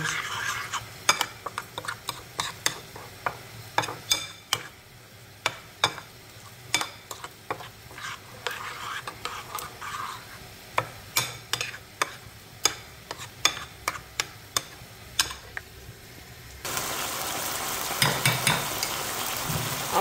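A metal fork stirring spices into yogurt in a ceramic plate, with irregular sharp clinks and scrapes against the plate. Near the end it gives way suddenly to a steady sizzle of chicken pieces frying in oil in a pan.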